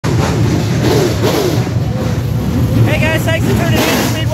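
Engines of a pack of dirt-track race cars rumbling as they roll past close by, their pitch rising and falling about a second in. A person's voice joins from about three seconds in.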